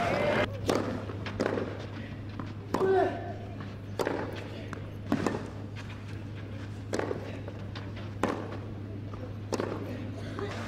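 Tennis racket strikes on a clay court: sharp hits about a second apart in the opening moments as the rally ends. After that come a short voice call and single scattered knocks, over a steady low hum.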